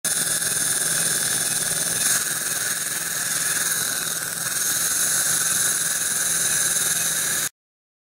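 Waterlase dental laser working on a child's molar: a steady loud hiss with a faint low hum beneath, cutting off suddenly near the end.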